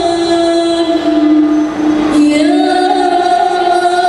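Girls' voices singing a qasidah in unison, holding one long sustained note that steps up in pitch a little past halfway and is held again.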